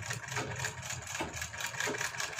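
Domestic sewing machine running at a steady speed, stitching with a rapid, even rhythm as a fabric strip is sewn along a neckline.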